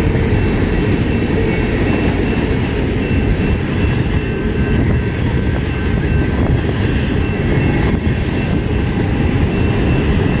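Cars of a mixed freight train rolling past at steady speed: a continuous rumble of steel wheels on the rails.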